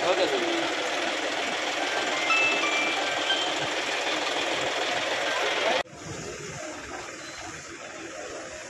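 Crowd voices over the steady noise of a running engine. About six seconds in, the sound cuts off suddenly and quieter crowd chatter follows.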